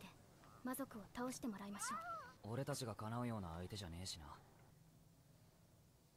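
Faint dialogue from the anime episode being played, with voices rising and falling in pitch for about four seconds, then quiet room tone.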